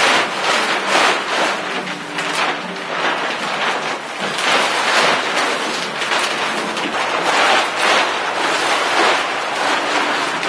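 A large white plastic sheet laid under a concrete slab being unfolded, shaken and dragged across a dirt floor, making a loud crinkling rustle that comes in repeated surges as it is flapped and pulled.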